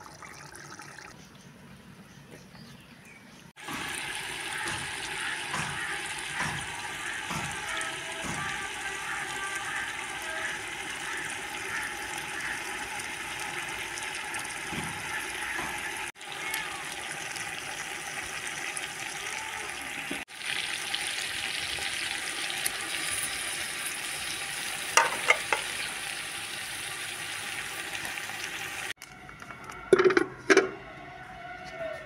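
Meat and masala sizzling as they fry in a large aluminium cooking pot: a steady hiss that starts a few seconds in, drops out briefly twice, and is broken by a few sharp knocks about three-quarters of the way through.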